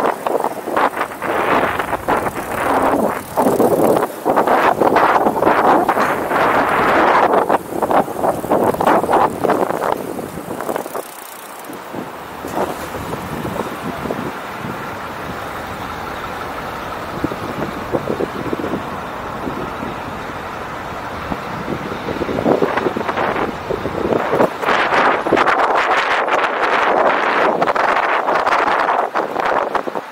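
Wind buffeting the microphone and the road noise of a bicycle rolling along city streets, with passing traffic. The buffeting eases for about ten seconds in the middle, then picks up strongly again.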